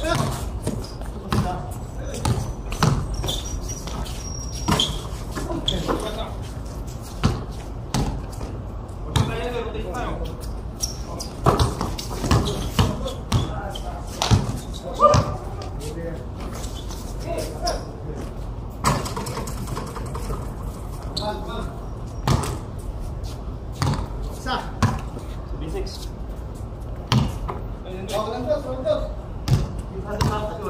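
A basketball being dribbled on a concrete court: sharp, irregular bounces throughout, mixed with players calling out now and then.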